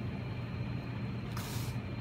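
Steady low hum of room background noise, with a brief soft hiss about halfway through.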